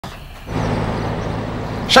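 Steady low hum of a car engine over street noise, starting about half a second in; a woman's voice begins right at the end.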